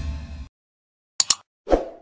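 Music fading out in the first half second, then sound effects for an animated subscribe button: two quick clicks about a second in, followed by a soft pop near the end.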